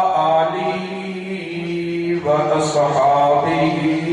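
A man's voice chanting in long, held melodic notes into a microphone, two drawn-out phrases with a short breath between them about halfway.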